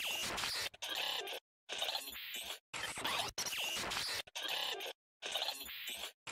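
Glitch sound effect from an analog horror soundtrack: harsh distorted static that chops in and out, cutting to dead silence about once a second.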